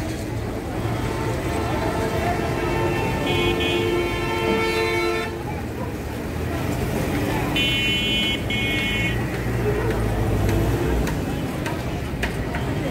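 Vehicle horns honking over steady street-traffic rumble. One long horn blast lasts about four seconds and cuts off abruptly; a few seconds later come two short toots in quick succession.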